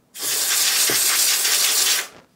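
Aerosol contact cleaner sprayed through its extension straw onto a receiver's dusty tuning capacitor: one steady hiss lasting nearly two seconds, cutting off near the end.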